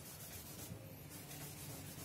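Chalk on a blackboard: faint, irregular scratching strokes.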